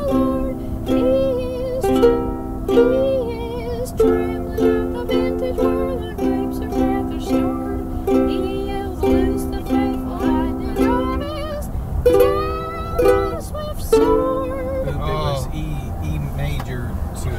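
Ukulele strummed in chords, about two strokes a second, with a voice singing along over a low car-cabin rumble. The strumming breaks off about eleven seconds in, then comes back for two short bursts before stopping near the end.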